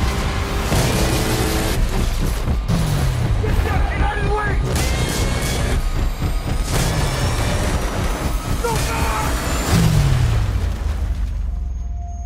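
Action-trailer sound mix: dramatic music with heavy booming hits, three of them trailing into a falling low sweep, laid over battle and aircraft sound effects.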